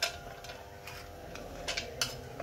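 Light, sharp metallic clicks and taps, about six in two seconds with the loudest at the very start, as a small screwdriver works at the wire leads and metal casing of a ceiling fan motor.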